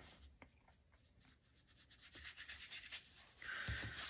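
Light, quick scratching and rubbing against paper, starting about a second and a half in after near silence, then a soft hiss and a dull thump near the end as the painted sheet is handled.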